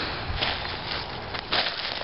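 Footsteps rustling and crunching through dry leaf litter and grass, with a few short crackles over a steady rustle.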